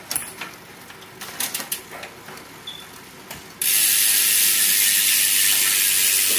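The Shimano 105 11-speed drivetrain of a Sava X-Five carbon road bike is turned by hand, giving sparse mechanical clicks and ticks. About three and a half seconds in, a loud steady hiss starts suddenly and covers them.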